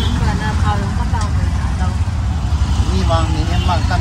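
Auto-rickshaw engine running with a steady low drone while riding in traffic, heard from inside the open passenger cabin.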